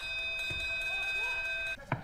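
A steady electronic buzzer tone, several pitches sounding at once, held for nearly two seconds and then cut off, followed by a single sharp click. It comes from ringside at a kickboxing bout as the referee steps in.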